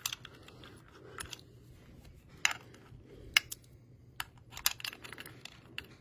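Handling of a smart deadbolt's metal outside unit: scattered light clicks and taps as the cover over its key cylinder is worked open, with a few sharper clicks about two and a half and three and a half seconds in.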